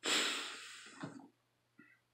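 A man's heavy sigh out through the nose: a breathy exhale, loudest at its start and fading away over about a second.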